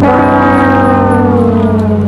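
Sad-trombone comedy sound effect: the long, low final note of the descending "wah-wah-wah-waah", held steady with its tone slowly dulling.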